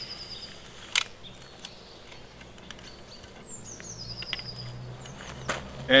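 Sharp clicks and knocks from a Zubin X340 compound crossbow being cocked with a rope cocking aid: one loud click about a second in, then a few knocks just before the end as the string latches. A bird sings a descending trill twice in the background.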